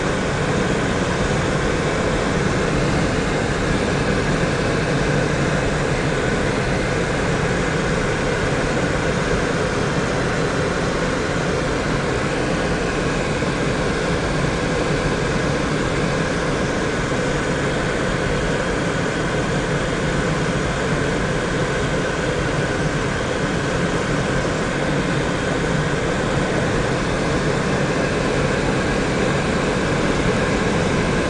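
Steady driving noise inside a moving car's cabin: engine, tyres on asphalt and wind, holding an even level throughout.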